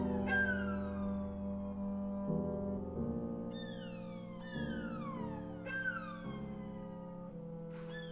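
Violin, viola and cello playing contemporary chamber music: repeated falling glissandi, roughly one a second, slide down over held lower notes, with a pause of about two seconds a second in.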